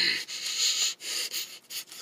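A person making a quick run of breathy sniffs through the nose, acting out a mouse sniffing out food.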